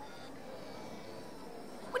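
Steady low background noise of a large hall, with faint thin electronic tones near the start: the little horn sound of a Brio Smart Tech battery toy train triggered by its sound action tunnel.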